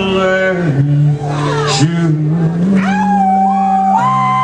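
Live country band playing an instrumental passage: a sustained, bending lead melody over a steady low note, the lead line gliding up and holding a high note near the end.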